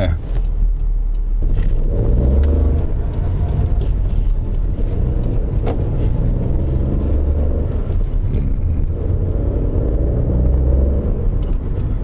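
Honda N-ONE RS's turbocharged 660 cc three-cylinder engine and road noise, heard from inside the cabin while driving, the engine note rising and falling with the throttle.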